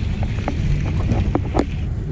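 Steady low rumble of a car rolling down a steep road, mixed with wind buffeting the microphone, with a few faint clicks through it.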